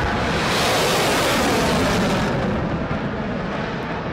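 Roar of a Kalibr cruise missile's solid-fuel booster just after launch from the ship's vertical launcher. It is a loud, steady rush that peaks in the first two seconds and then eases off a little as the missile climbs away.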